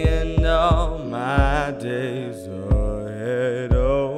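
A slow pop song: a singer's vocal runs waver and bend over sustained chords, with a low kick drum hitting several times.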